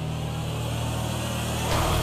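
Low, steady rumbling sound effect that swells into a louder whoosh near the end, accompanying a flying genie.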